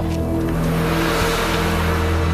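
A dramatic music score with sustained low tones, over a car pulling up on a gravel drive. A noisy crunch swells from about half a second in.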